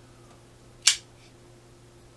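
Kershaw Oso Sweet (model 1830) assisted-opening folding knife flicked open: the blade snaps out once, a single sharp click a little under a second in.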